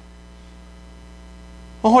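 Steady low electrical mains hum, with a man's voice starting near the end.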